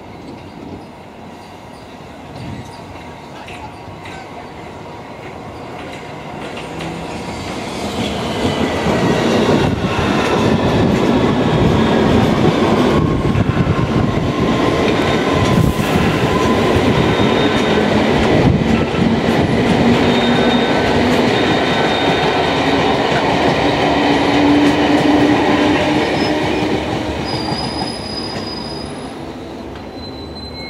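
London Underground S stock train passing close at speed, its wheels rumbling on the rails, with steady high whines running over the rumble. The sound builds over the first several seconds, stays loud through the middle and fades near the end, as an A60 stock train passes on the next track.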